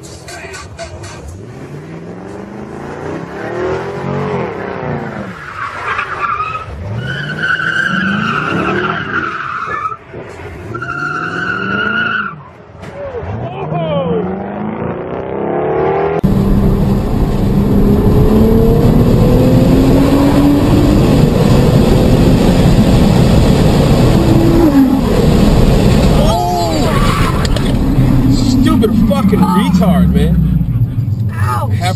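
Supercar engine revving up and down repeatedly, with two short bursts of tyre squeal about a third of the way in. About halfway through the sound cuts abruptly to a louder, noisier passage of a car engine pulling steadily higher in pitch.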